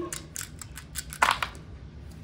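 Plastic sketch-pen caps clicking against one another and tapping onto paper as they are handled and set down: a string of light clicks, with a louder clatter a little past one second in.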